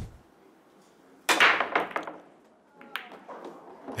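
Pool break shot: the cue ball smashes into the racked balls with one loud crack, followed by a clatter of balls knocking together and off the cushions. More scattered knocks follow as the balls roll out, with two balls falling into pockets.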